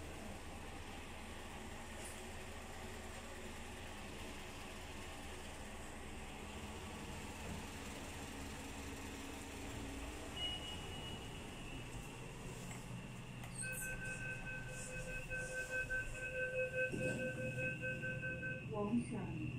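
Otis passenger lift: a steady low hum while the car is awaited, a short electronic tone about ten seconds in, then from about fourteen seconds a pulsing beep sounding in several pitches at once for about five seconds, starting with a few clicks, as the car arrives and its doors open.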